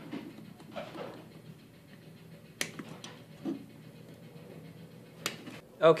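Quiet handling of a small vacuum cleaner motor as its wire connectors and carbon brush holders are worked off. There are two short sharp clicks, one about two and a half seconds in and one near the end.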